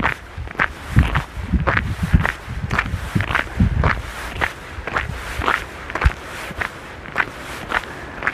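Footsteps crunching in fresh snow, a steady walking pace of about two steps a second.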